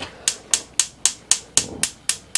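Gas hob's spark igniter clicking as the burner is lit, a steady run of sharp ticks about four a second.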